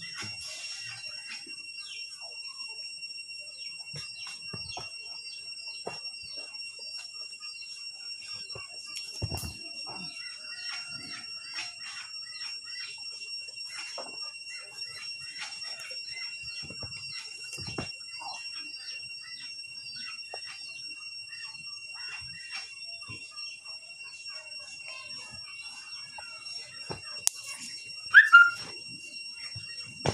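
A steady high whistling tone with a fainter one above it, with many faint chirps and ticks over it and a few dull thuds from bodies landing on a blanket-covered ground. Near the end a boy gives a brief, loud cry.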